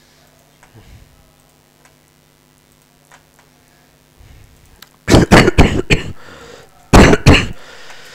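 A man coughing: a loud run of coughs about five seconds in and another about seven seconds in, after a few faint clicks.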